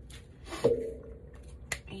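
Glue stick rubbed along a paper edge, with a sharp knock about half a second in and a brief click near the end.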